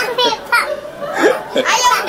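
Young children's voices: short, high-pitched calls and exclamations during play.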